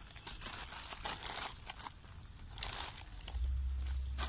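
Plastic mailer bag and bubble wrap crinkling and rustling in short bursts as they are handled and pulled apart. A low rumble comes in near the end.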